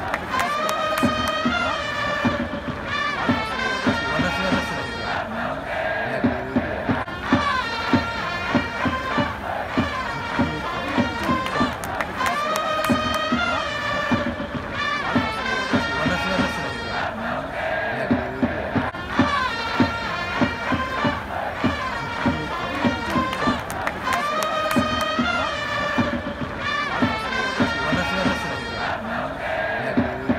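Japanese pro-baseball cheering section performing a player's cheer song: a large crowd chants and sings in unison over trumpets and a steady drum beat. The same short melody repeats about every six seconds.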